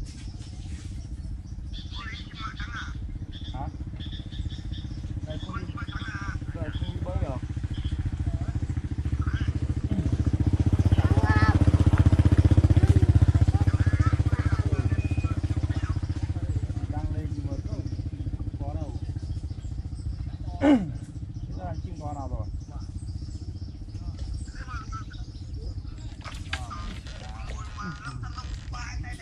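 A small engine passing nearby, growing steadily louder to a peak about halfway through and then fading away, with faint voices in the background. A single sharp knock stands out about 21 seconds in.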